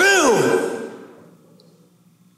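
A man's shouted, drawn-out word at the very start, rising then falling in pitch, dying away in the hall's echo over about a second and leaving only a faint low hum.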